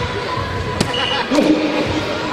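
A soft-tip dart strikes an electronic dartboard with a sharp hit about a second in, followed at once by a short electronic tone from the board, over a steady hall background with a voice near the end.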